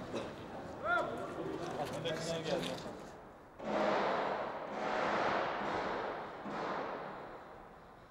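Men's voices in a crowd, then a few seconds of loud rushing noise that swells and fades three times.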